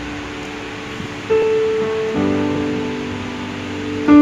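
Electronic arranger keyboard playing a slow intro of held chords: a new chord comes in about a second in, and a fuller chord with bass notes joins at about two seconds.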